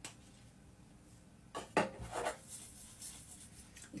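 A few short clinks and knocks of kitchen handling begin about halfway through: a small vanilla extract bottle and a stainless steel saucepan being handled on a worktop.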